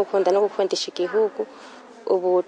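A woman speaking, then pausing about a second in, leaving only a faint background hiss.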